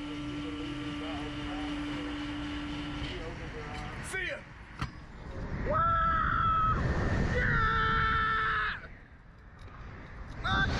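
Riders on a slingshot reverse-bungee ride screaming as they are launched into the air: two long held screams, the second higher, with wind rushing over the microphone. Before the launch a steady machine hum stops about three seconds in, and a sharp click follows shortly before the screams.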